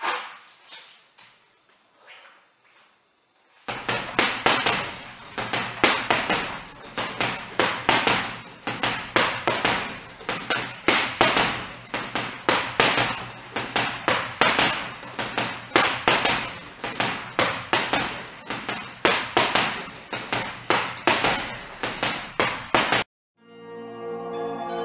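Boxing gloves striking a hanging heavy bag in fast combinations, several sharp hits a second, starting about four seconds in and cutting off abruptly just before the end; a few fainter hits come before that.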